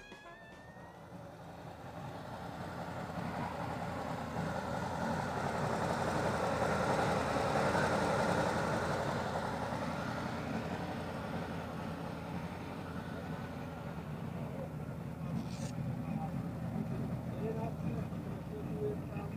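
Tatra truck engine idling steadily, heard through its open front engine hatch, with a rushing hiss that swells to its loudest about halfway through and then eases off. People's voices murmur in the background.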